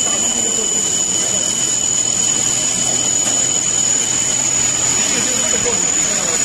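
Double-head gantry CNC tube sheet drilling machine drilling steel plate: a steady, loud machining noise with coolant spray, and a steady high-pitched whine over it.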